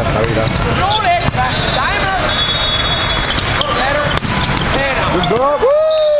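Volleyball rally in a large echoing sports hall: sharp hits of the ball and sneaker squeaks on the court, with players' shouts over the babble of other courts. Near the end comes a long squeal that falls in pitch, as a player goes down on the floor.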